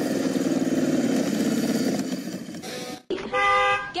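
Motorcycle engine running with a rapid throbbing pulse, easing off slightly before it cuts out abruptly about three seconds in. A held pitched tone, like a horn toot, follows near the end.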